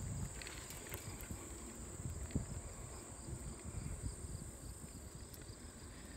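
Steady high drone of insects in the trailside grass and trees, over the low rumble and occasional light knocks of a bicycle rolling along a paved trail.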